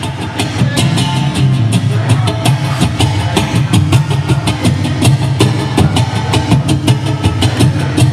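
Line 6 Variax acoustic guitar strummed in a steady, driving rhythm with sharp percussive strokes and a strong low end.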